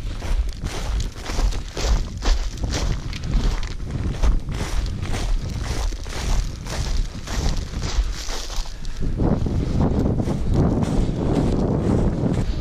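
Footsteps through frost-covered grass at a steady walking pace, about two steps a second. In the last few seconds wind buffets the microphone with a low rumble.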